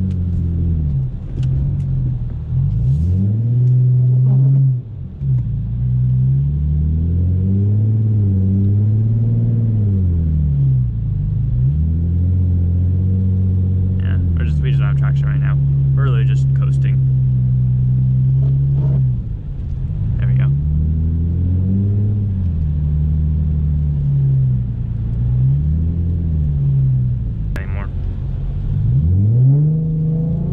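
Ford Mustang's engine heard from inside the cabin, revving up and falling back again and again as the throttle is worked, with a few seconds of steady running in the middle, while the car is driven on icy snow.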